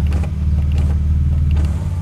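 Power-window motors of a BMW E36 convertible running as the all-windows switch on the centre console is pressed, with a mechanical creak. The engine is idling steadily underneath.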